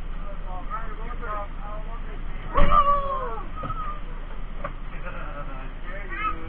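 Voices talking indistinctly, with a sudden loud high-pitched call with a thump about two and a half seconds in.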